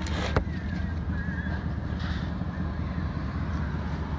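Kawasaki H1 500 three-cylinder two-stroke engine idling steadily through aftermarket Power Pipes expansion-chamber exhausts, with a single sharp click about half a second in.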